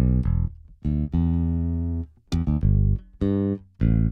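Synthesizer bass line playing short, clipped notes, with one longer held note about a second in.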